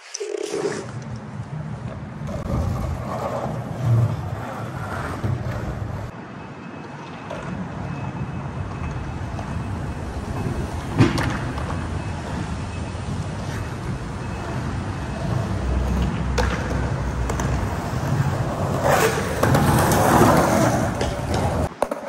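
Skateboard wheels rolling on concrete, a steady rumble that grows louder toward the end, with a few sharp board clacks along the way.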